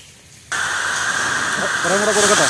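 A steady, loud hiss that starts abruptly about half a second in, with a man's voice faintly underneath near the end.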